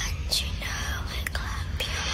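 A person whispering, over a steady low hum, with a few faint clicks.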